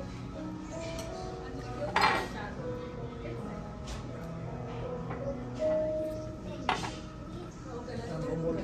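Tableware clinking as food is served and eaten: a few sharp clinks of cutlery on dishes and glass, the loudest about two seconds in and another near seven seconds, over background music.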